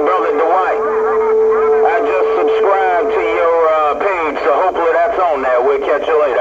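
Voices of long-distance skip stations on CB channel 11 (27.085 MHz), coming in over a Cobra 148GTL CB radio's speaker. A steady whistle tone runs under them for about the first half.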